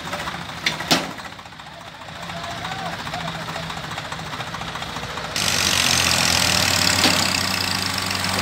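Tractor diesel engines idle with a steady low note, with two sharp knocks about a second in. About five seconds in, the engine gets louder and a loud hiss of noise joins it suddenly.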